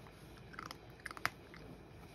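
A cat crunching dry kibble from its bowl: a few quick crunches in two clusters, the sharpest about a second and a quarter in.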